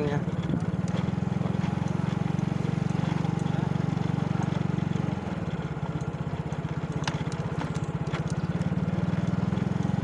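Small motorcycle engine running at low, steady speed close by, its firing pulses even throughout; the engine eases off slightly about five seconds in.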